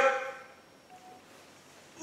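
The tail of a man's spoken phrase fades out, then quiet room tone with one faint, short tone about halfway through.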